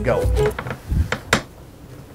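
A heavy metal-pipe rolling pin rolled over a dough wrapper on a floured table: a low rolling rumble, then one sharp knock of metal just over a second in.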